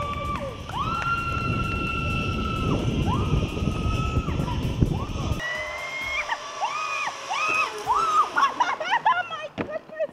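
A woman's long, high-pitched screams while riding a zip line, over the rushing noise of the ride. The rush cuts off about halfway through, and shorter rising-and-falling cries follow.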